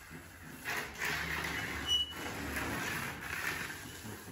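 Paint roller on an extension pole rolling wet sealer onto a plastered wall: a rough, wet rasping that starts about a second in and fades near the end.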